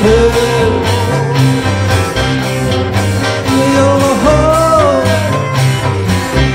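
Swiss folk band playing live: Appenzeller hackbrett, double bass, electric guitar and cello together, with a stepping bass line underneath and a melody line that slides up and down in pitch about four seconds in.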